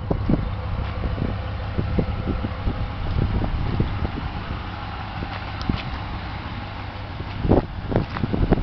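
Low steady rumble of wind on the microphone over a pickup's idling 5.7 Hemi V8, with light footsteps ticking throughout and a louder knock near the end.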